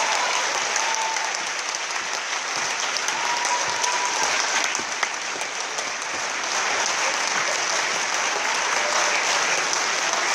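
Concert hall audience applauding steadily.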